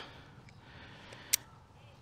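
Quiet background hiss with a single sharp, light click a little past the middle, from the rope and climbing hardware being handled.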